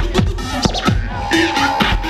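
Turntable scratching over a beat: a record is dragged back and forth by hand, making quick rising and falling pitch glides on top of a steady bass. A held steady note comes in about a second in and lasts nearly a second.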